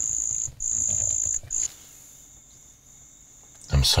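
Crickets trilling: a high, steady trill that comes in long stretches with short breaks for the first second and a half, then carries on more faintly.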